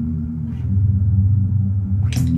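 Electric bass guitar playing low, sustained notes that swell about half a second in.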